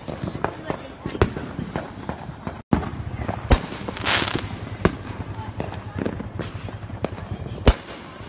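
Aerial fireworks going off: a rapid, irregular run of sharp bangs and pops. A brief crackling hiss of bursting stars comes about four seconds in, and the loudest bangs fall just before that and near the end.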